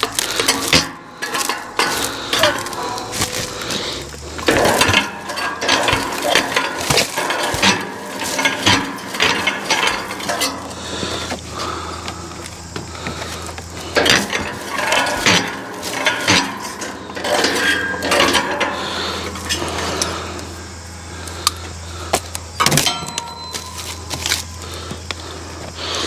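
Plastic stretch wrap crackling as it is pulled off its roll and wound around a bundle of split firewood in a bundler, with scattered knocks and clicks of wood and metal. A steady low hum runs underneath from about four seconds in.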